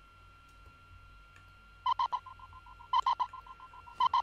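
Gated, echoing whistle sample in an amapiano beat. After a quiet first couple of seconds it plays three bursts about a second apart, each a quick run of four high stabs that trails off into fainter echoing repeats.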